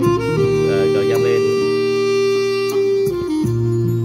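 Recorded music, sustained instrumental notes with a voice, playing through a Pioneer HM51 mini hi-fi system and its pair of bookshelf speakers, while the treble is stepped up from +1 to +5.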